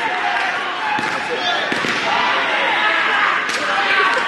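A steady hubbub of overlapping voices echoing in a large sports hall, with three sharp thuds from the taekwondo sparring bout, strikes landing on padded gear or feet slapping the mat.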